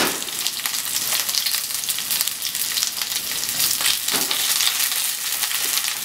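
Chicken pieces sizzling and crackling in a non-stick frying pan on a gas flame. The pan is shaken, and the meat slides and rustles across it with a louder rush at the start and again about four seconds in.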